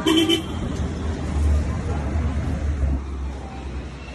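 A short vehicle horn toot right at the start, followed by the low rumble of a motor vehicle on the street that swells and fades twice.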